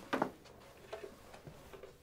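A rolled carpet runner flipped out along a floor: a brief soft thump just after the start as it unrolls and lands, then a few faint light ticks.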